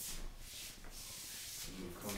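Scuffing and rustling from two people pushing and pivoting against each other: shoes sliding on a wooden floor and clothing rubbing. It comes in several short hissy stretches.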